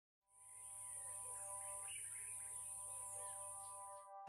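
Faint birdsong, with chirps, over a steady high-pitched hiss that begins about half a second in. A soft sustained music chord sits underneath and thins out about halfway through.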